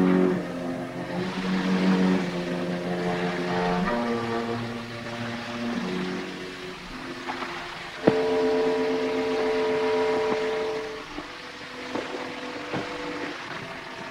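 Film-score music of held chords changing every second or two, over the hiss of an old soundtrack. About eight seconds in, a single held note starts suddenly and sounds for about three seconds.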